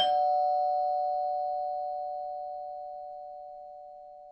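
Two-note ding-dong doorbell chime. The lower second note strikes at the start, and both notes ring on together, fading slowly over about four seconds.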